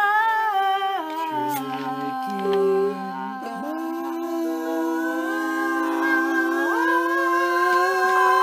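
Two or more voices humming long held notes together without instruments, sliding from one pitch to the next.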